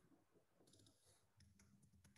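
Near silence, with a few faint computer keyboard clicks in the middle.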